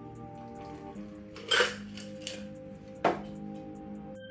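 Two sharp clinks from a steel cocktail shaker, about a second and a half apart, as the last of a strained cocktail is poured out, over soft background music with held notes.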